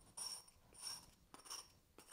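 Small iron spatula scraping unfired glaze off the bottom of a glazed ceramic cup, removing it from the base before firing. Three short, faint scrapes about half a second apart.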